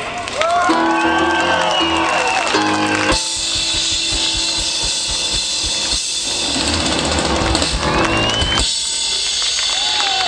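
Live band playing out the end of a song on drum kit and keyboard, with no vocal line. About three seconds in the band comes in louder and fuller with a bright, dense wash, and a short rising glide comes shortly before it steps up again near the end.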